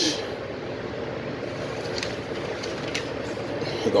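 Steady mechanical hum and hiss of background machinery or ventilation, with a couple of faint clicks about two and three seconds in.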